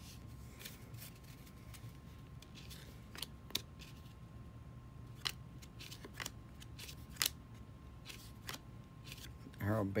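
Baseball trading cards being sorted by hand, the stiff cardboard cards slid apart and flicked against each other, giving a few scattered sharp clicks.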